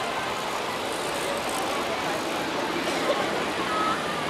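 Steady outdoor background noise with faint, distant voices.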